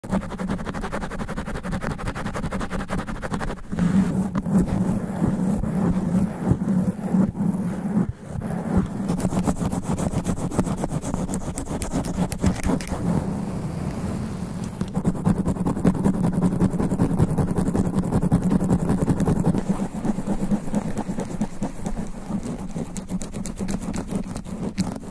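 Long fingernails scratching fast and hard on a microphone's foam sponge cover, heard right at the capsule as dense, rapid scratching with a strong low rumble. It runs without a break, louder from about four seconds in and again from about fifteen seconds, with a brief drop near eight seconds.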